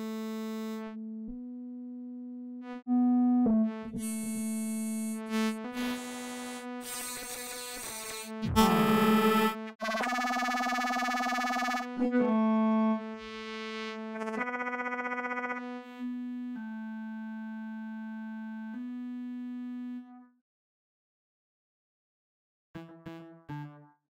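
A held synthesizer saw-wave note, distorted through iZotope Trash 2, changing its tone every second or two as one experimental distortion preset after another is switched in: sometimes buzzy, sometimes with a bright fizzy hiss on top. The note keeps one steady pitch and cuts off about 20 s in.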